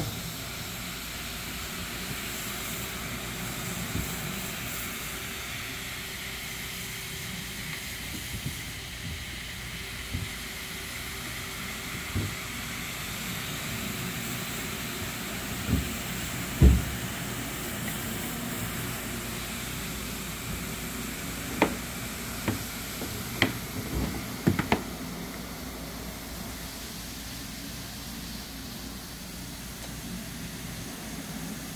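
Rotary floor machine with a solution tank running steadily, its spinning brush scrubbing shampoo into a wet area rug. A few short sharp knocks cut through, the loudest about halfway through and a cluster a few seconds later.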